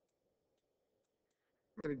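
Near silence: faint room hum with a few tiny ticks, then a man's voice starts speaking near the end.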